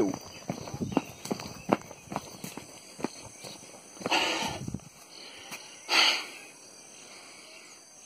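Footsteps and the rustle of plants brushing past as someone walks through a banana grove. There are two louder rustling bursts about four and six seconds in, and the sound settles to a low steady background near the end.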